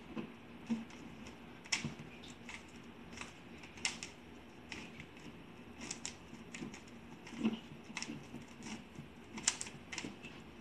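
Plastic 3x3 Rubik's cube being twisted again and again by hand, one two-move sequence repeated, its layers giving irregular clicks and clacks a few times a second.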